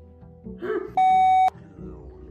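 A censor bleep: a loud, steady beep lasting about half a second, a little past the middle, masking a swear word.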